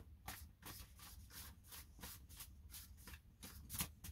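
A tarot deck being shuffled by hand: short rasping strokes of cards sliding against each other, about three a second, faint, with the strongest stroke near the end.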